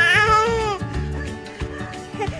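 A baby's high-pitched squeal, rising then falling and lasting under a second, near the start, over background music.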